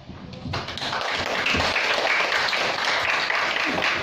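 A small audience of students applauding, the clapping starting about half a second in and rising to steady applause.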